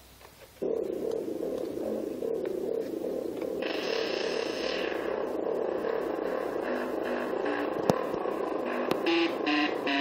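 MeeBlip synthesizer sounding a repeating pulsed note that starts about half a second in. Its tone changes as its knobs are turned: it turns much brighter for about a second from three and a half seconds in, and near the end it breaks into separate notes of changing pitch.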